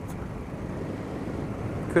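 Steady wind rush and engine noise of a motorcycle being ridden through traffic, with wind buffeting the microphone.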